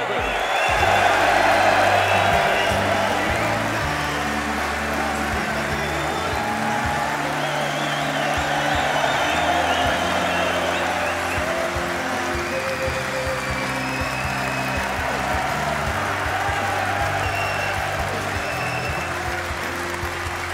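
Walk-on music with a moving bass line, played over a large arena crowd cheering and applauding, loudest in the first few seconds.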